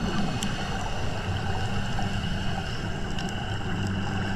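Underwater ambience recorded on a reef dive: a steady low engine hum carried through the water, with a few faint sharp clicks.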